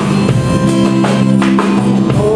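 Live worship band playing a song: a drum kit keeping a beat under strummed acoustic guitars.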